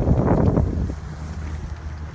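Wind buffeting the microphone as a low rumble, loudest in the first half-second, then easing.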